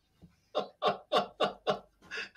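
A man laughing, a run of five short 'ha' bursts at about three a second, starting about half a second in.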